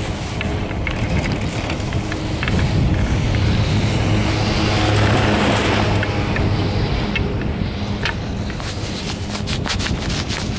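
Wind buffeting the microphone on a moving chairlift, with a steady low hum under it and a few scattered clicks; the rush swells in the middle.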